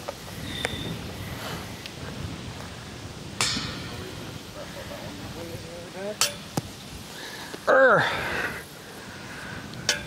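Wind buffeting the microphone in a steady low rumble. Sharp knocks with a brief ring come about three and six seconds in, and a loud falling vocal exclamation comes near eight seconds.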